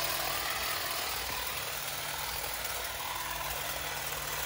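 Stihl HSA 25 cordless shrub shear fitted with its hedge-trimmer blade attachment, running with a steady hum as it trims along the face of a hedge.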